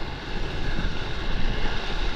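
Whitewater rushing around a stand-up paddleboard as it rides a broken wave, with wind buffeting the microphone in a steady, noisy rumble.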